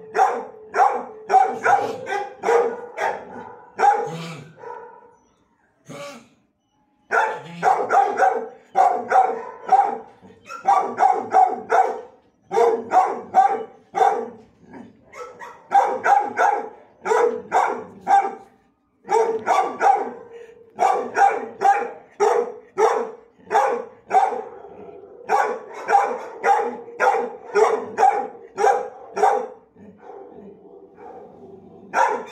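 Dog barking over and over in quick runs of about two to three barks a second, with short pauses between runs, in a shelter kennel.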